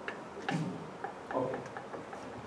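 Footsteps on a hard floor as a person walks a few paces: a handful of light, irregularly spaced clicks and knocks.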